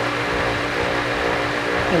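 Goodman outdoor air-conditioner condenser unit running: a steady motor hum with a held tone over fan noise.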